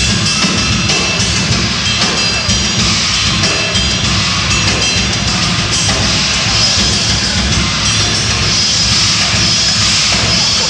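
Live concert recording of a rock band playing, the drum kit to the fore, loud and continuous.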